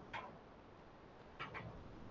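Three faint, short clicks over a quiet room hum: one just after the start and a quick pair about a second and a half in.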